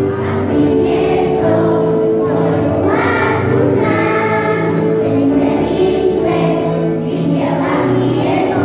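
Children's choir singing a song together, accompanied by acoustic guitar.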